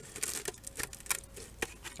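Irregular small clicks and taps of plastic PVC pipe fittings being handled and pushed together onto a pool skimmer.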